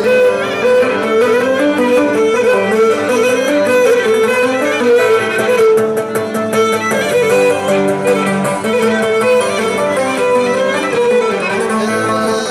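Live Cretan dance music: a Cretan lyra plays the melody over plucked and strummed laouto accompaniment, continuously and without a break.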